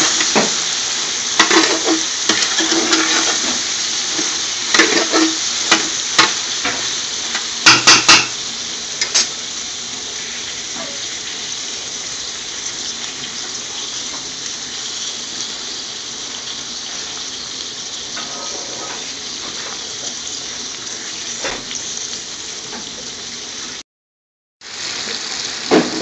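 Whole scotch bonnet peppers frying in oil in an aluminium pot, with a steady sizzle. A metal spoon knocks and scrapes against the pot as they are stirred during the first several seconds. The sound cuts out briefly near the end.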